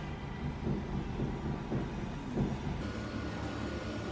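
Steady low rumble of background noise with a faint hum.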